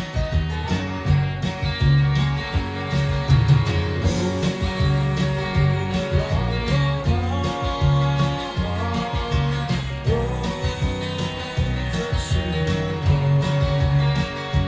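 Telecaster-style electric guitar playing a country-rock instrumental passage over a backing with a bass line.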